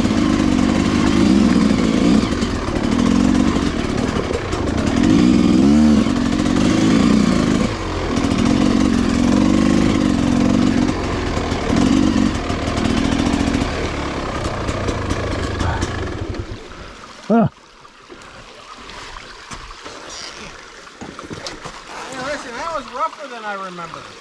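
Dirt bike engine running at low speed, the throttle opened and eased off in short bursts, then switched off about two-thirds of the way through.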